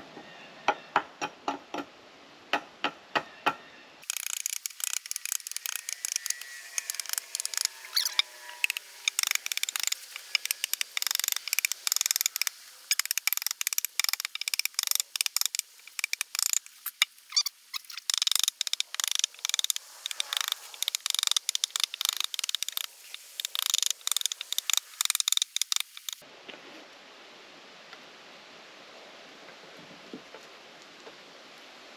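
Hatchet chopping a cedar pole, with sharp strikes about two or three a second. About four seconds in they turn into a long run of much faster, thinner-sounding knocks, which stop near the end.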